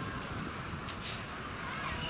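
Steam rack-railway train rolling away along the track: a steady low rumble from its carriages on the rails, with a couple of short clicks about a second in.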